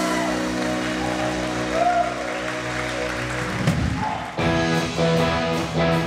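Live rock band playing: a held, sustained chord rings for the first few seconds, then about four seconds in an electric guitar starts a rhythmic, evenly repeated strummed chord pattern with bass underneath.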